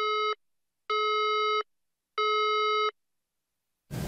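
A TV station's severe-weather alert tone: three identical electronic beeps, each about three-quarters of a second long and about half a second apart. It signals a weather bulletin breaking into regular programming.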